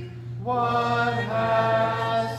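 A congregation singing a hymn a cappella, many voices in harmony holding long notes. After a short breath between lines, a new phrase starts about half a second in, and the notes change again a little past the middle.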